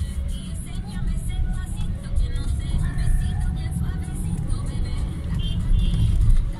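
Steady low rumble of a car's engine and tyres heard from inside the cabin while driving, with music and faint voices playing more quietly over it.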